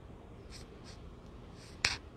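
Hands rustling softly a few times, then one sharp snap near the end.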